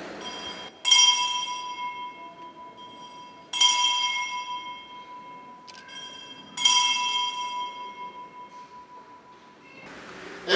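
Altar bell struck three times at the elevation of the chalice after the consecration, each stroke ringing out with the same clear pitch and fading away before the next, about three seconds apart.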